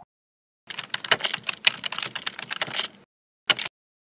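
Computer keyboard typing sound effect: a quick run of key clicks lasting about two seconds, then one short separate click near the end.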